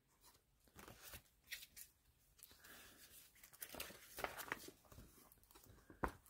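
Faint crinkling of clear plastic card-sleeve pages being handled and turned in a binder, a few soft crackles clustered a little past the middle, otherwise near silence.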